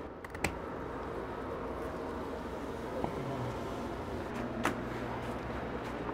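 Steady whir of grow-room fans, with a sharp snip about half a second in and another near five seconds as pruning shears cut through a large cannabis plant's stems.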